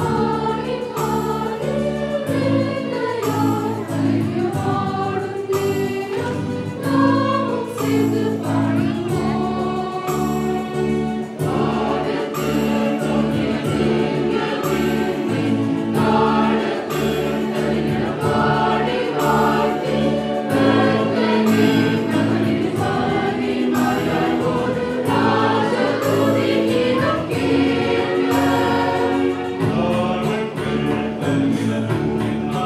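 A mixed choir of children and adults singing a Christmas carol into microphones, over an accompaniment with a steady beat.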